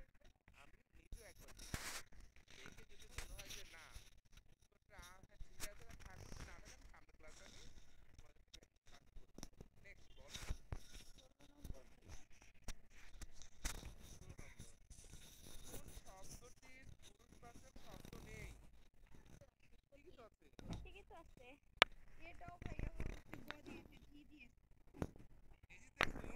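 Faint, indistinct voices in the background, with scattered rustling and a few sharp clicks.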